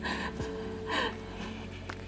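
A woman crying, with two sharp gasping sobs about a second apart, over soft background music with held notes.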